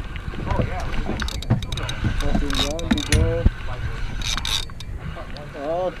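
Penn spinning reel being cranked by hand against a hooked fish, its mechanism whirring and clicking over a steady low rumble of wind on the microphone and the boat.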